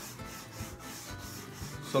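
Yellow pastel rubbed back and forth on a white drawing board in repeated scratchy strokes, filling in a shape with colour.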